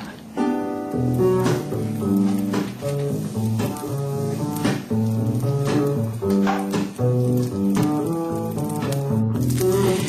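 Background music: an instrumental tune with a bass line, the notes changing several times a second.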